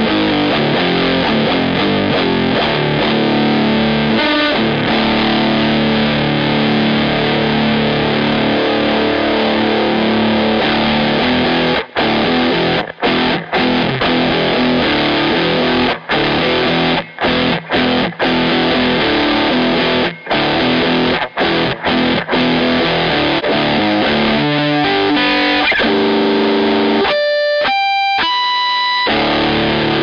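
Fernandes Vertigo electric guitar played through heavy distortion: full, sustained chord riffing, broken in the second half by a series of sudden short stops. Near the end a few single clear notes ring out on their own before the distorted chords come back.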